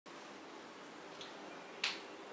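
A single sharp click near the end, over faint room hiss.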